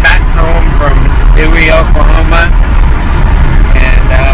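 Steady low road and engine rumble inside a moving car's cabin, with a man's voice over it.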